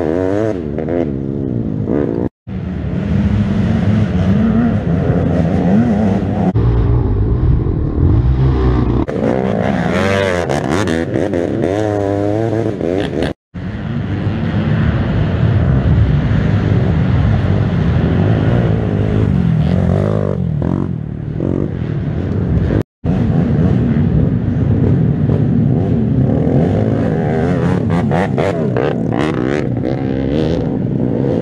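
Racing ATV engines revving up and down in pitch as youth quads ride past close by. The sound drops out abruptly three times, at about a tenth, halfway and three quarters of the way through.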